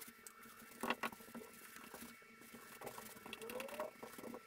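Small paintbrush dabbing and stroking wet epoxy into the plywood corners, a faint irregular run of soft dabs and scrapes. A sharper knock comes about a second in, and a short rising squeak near the end.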